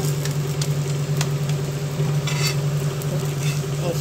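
Egg-stuffed parotta sizzling on a hot iron tawa as a steel spatula presses it, with a couple of faint clicks of the spatula on the pan, over a steady low hum.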